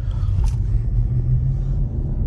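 Steady low rumble of a car heard from inside the cabin, with one short click about half a second in.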